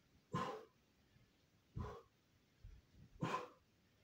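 Short, sharp shouted exhalations (kiai) from a karate practitioner, three of them about a second and a half apart, one with each technique. Softer low thuds of bare feet on the floor fall between them.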